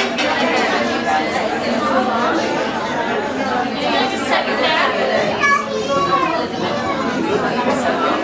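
Crowd chatter: many women's voices talking at once around dining tables in a large room, a steady hubbub of overlapping conversation with no single voice standing out.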